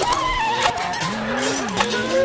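Experimental electronic music: synthesizer tones that waver and glide up and down in pitch, with a few sharp clicks.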